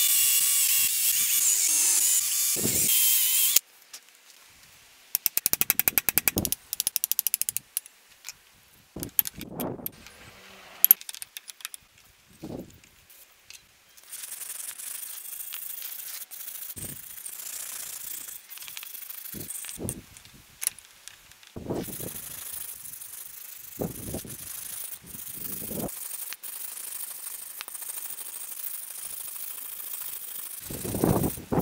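An electric drill boring into the old wooden handle in a ball-peen hammer's eye, running steadily for about three and a half seconds. After that comes a short run of rapid clicking, then scattered dull knocks of a hammer striking the vise-clamped head to drive out the handle remains, over a steady hiss.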